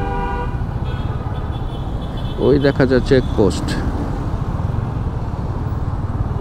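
A vehicle horn toots briefly at the start, over the steady low rumble of wind and road noise from a motorcycle ride in traffic.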